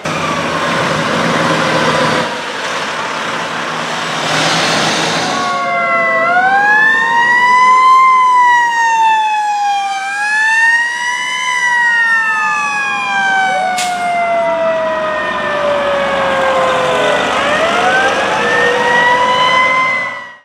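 Fire engine sirens wailing as the trucks move off: after about five seconds of loud, rushing noise, several sirens sound together, their pitches rising and falling slowly and overlapping, with one climbing again near the end.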